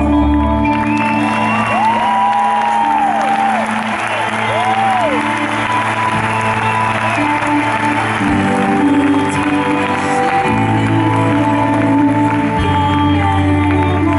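Live pop-rock band playing held chords on electric guitar and keyboards, with the audience cheering and applauding over the music for the first half or so.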